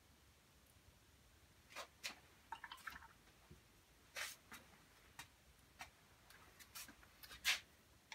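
Faint, scattered short scratches and light taps of a watercolour paintbrush stroking and dabbing paper, a dozen or so spread irregularly.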